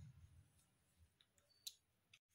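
Near silence: quiet room tone with a single faint, short click about one and a half seconds in.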